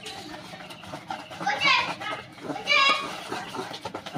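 Wire whisk beating thin batter in a steel bowl, with a run of small ticks and scrapes as the wires hit the bowl. Two short high-pitched calls sound in the background, one about halfway through and one near the three-second mark.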